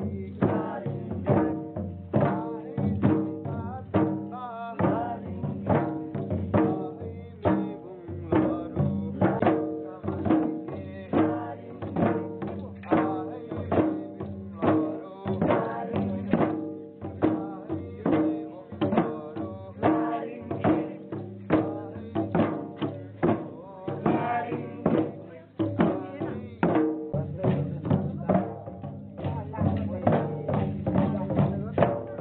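Several Limbu chyabrung drums, two-headed barrel drums, beaten together in a steady rhythm of several strokes a second for the chyabrung dance.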